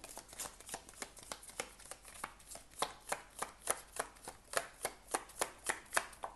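A deck of round oracle cards being shuffled by hand, the cards slapping against each other in a quick, uneven run of crisp clicks, several a second.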